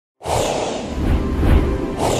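Whooshing sound effect with a deep rumble and music under it, from an animated logo intro; it starts suddenly just after a moment of silence and swells near the end.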